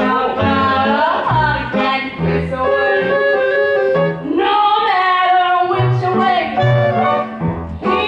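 Live pit orchestra with clarinets and drums playing an up-tempo show tune: held melody notes over a bass line that pulses on every beat.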